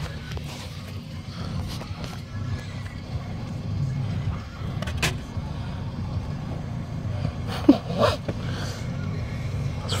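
Low steady rumble of a parked car idling, heard from inside its cabin, with a single sharp click about five seconds in.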